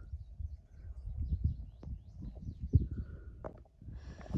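Outdoor ambience: an irregular low rumble on the microphone, with faint, short bird chirps and a brief call about three seconds in. A few sharp knocks can also be heard.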